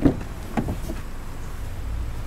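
Car door latch releasing with a sharp clunk as the front door of a Ford Fiesta is pulled open, then a second, softer clunk about half a second in as the door swings out.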